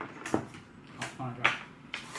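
Two sharp knocks about a second apart: small objects being set down on a wooden desktop.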